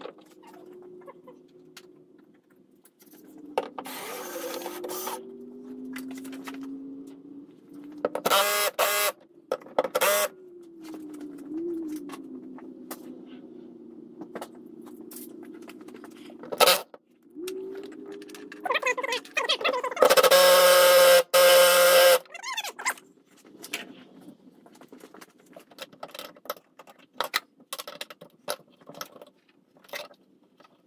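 Cordless drill/driver running in repeated spells as it backs out the screws and bolts holding the wiper cowl panel, its motor whine rising and falling in pitch. The loudest, highest-pitched run comes about 20 seconds in. Light clicks of parts and tools come between the runs.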